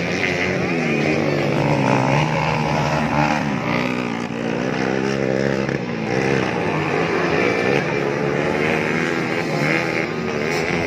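Several motocross dirt bike engines revving up and down together, pitch rising and falling over and over as the riders work the throttle around the track.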